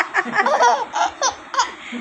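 Baby laughing in a string of short bursts, with a brief lull near the end.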